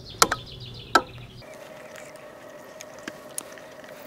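Two sharp clicks about a second apart as hand wire strippers bite through and pull off the cable insulation. A bird chirps quickly in the background early on.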